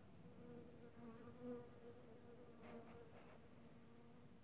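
Faint, steady buzz of a honeybee's wings as it forages on flowers, swelling about a second and a half in and then tapering off.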